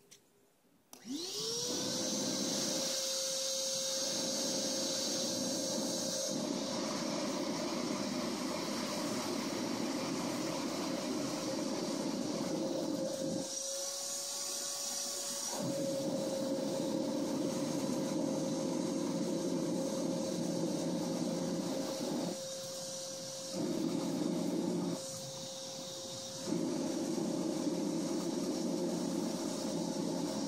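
Blue shop vacuum's motor switching on about a second in and spinning up to a steady whine, its air rushing out through a hose held at the intake of a handmade jet engine to spin up the turbine. The rushing drops away briefly three times while the motor runs on.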